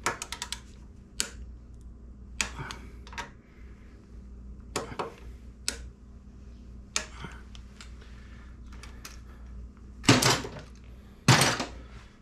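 Torque wrench on an Allen socket, ratcheting and clicking in short bursts as the foot peg mount bolts are tightened to 25–35 ft-lbs. Two louder clatters come near the end.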